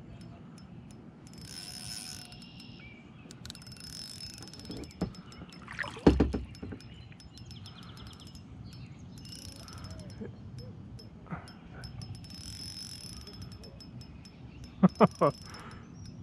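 Ultralight spinning reel ticking as a hooked bass is played against light line, the fish holding down in the weeds. A loud sharp knock about six seconds in and a quick cluster of knocks near the end.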